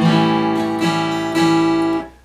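Acoustic guitar in drop D tuning strummed on an A7 shape at the 2nd fret (fretted D and B strings, open G, muted low E), the chord ringing and struck three times.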